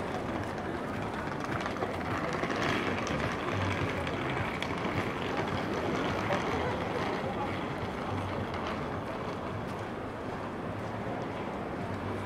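Pedestrian street ambience: a steady murmur of passers-by talking and walking close around, over the general hum of a city centre.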